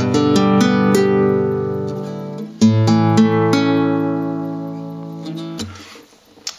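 Nylon-string classical guitar: a chord picked string by string in a few quick notes and left to ring, then, about two and a half seconds in, a second chord picked the same way and left to ring out and fade.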